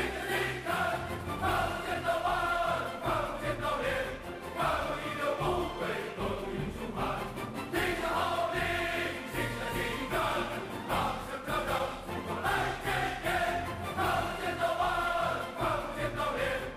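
A large chorus of male soldiers sings a rousing military rally song in unison, phrases punched out with chanted lines of "qing zhan, qing zhan" ("we request to fight").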